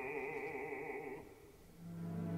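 Opera singer holding a sung phrase with wide vibrato over a soft orchestra. The voice dies away a little over a second in, and low sustained orchestral notes come in near the end.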